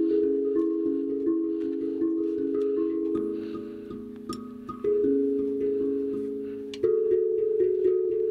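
Steel tongue drum struck with small mallets: several pitched notes ring, overlap and fade slowly, with fresh louder strikes about five and seven seconds in.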